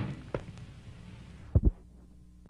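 Film soundtrack: music fading away, then a short thump and, near the end, a low double thump, two beats in quick succession like a heartbeat.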